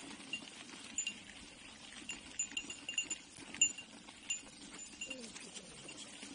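Bicycle tyres rumbling over a rough dirt-and-gravel track, with a small bell jingling in short rings about a dozen times as the bike jolts over bumps, most of them between two and four seconds in.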